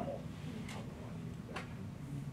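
Room tone in a lecture room: a low steady hum with two faint clicks about a second apart.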